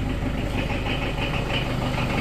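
Diesel engine of an old farm vehicle idling steadily, an even low drone.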